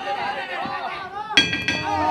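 Ringside voices shouting and calling during a kickboxing bout, with a sharp ringing strike cutting in about a second and a half in.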